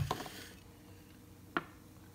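Drinking glasses clinking against glass and the stone counter as they are handled beside a blender jar: a clatter dying away in the first half second, then one light knock about a second and a half in.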